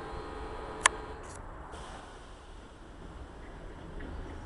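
EN57 electric multiple unit moving along the platform: a steady low rumble with a faint motor hum that fades after the first second. One sharp click about a second in.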